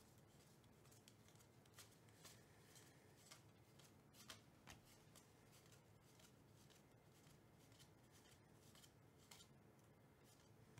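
Faint, irregular clicks and swishes of Topps baseball cards being slid one at a time off a stack in the hand onto another stack, with a sharper click about four seconds in.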